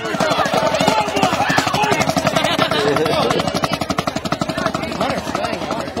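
Marching band drumline playing fast, even strokes on snare drums, with voices and chatter mixed in.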